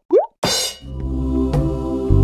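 A short rising 'bloop' sound effect, then a brief bright crash. After it, background music begins with sustained chords and a light beat.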